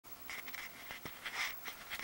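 Handling noise from an iPod nano's built-in microphone as it is twirled in the hand: irregular rustling and small clicks of fingers moving over the device, ending in a sharp click.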